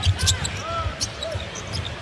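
A basketball being dribbled on a hardwood court, a few irregular thuds, with short sneaker squeaks over arena crowd noise.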